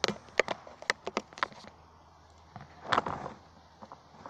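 A quick run of sharp taps, about eight in under two seconds, then a brief louder rustle about three seconds in.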